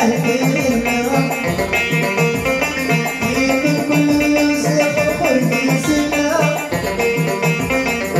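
Live band music: a banjo picked over a Korg Pa600 arranger keyboard's accompaniment, with sustained keyboard tones and a steady bass beat.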